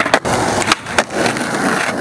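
Skateboard wheels rolling over concrete, a steady gritty roll broken by a few sharp clacks.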